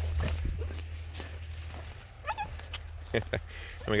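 Malamute/Siberian husky mix puppies playing in snow, with a short high whimper a little past two seconds in and a few sharp clicks about a second later, over a low steady rumble.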